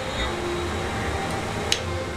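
Ale pouring from a glass bottle into a tilted pint glass, a steady stream with the head foaming up, and a single short click near the end.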